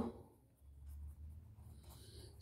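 A pen writing by hand on paper held on a clipboard, faint.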